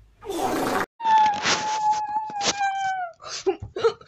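A short rush of noise, then one long high-pitched cry held steady for about two seconds that drops in pitch at the end, followed by short choppy sounds near the end.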